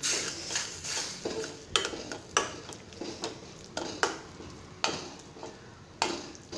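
A steel spoon stirring and scraping a thick onion-and-chilli masala in a stainless steel pan, with irregular clinks of metal on metal about twice a second.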